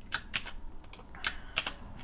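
Computer keyboard keys clicking in a quick, irregular run of keystrokes as text is entered into a field.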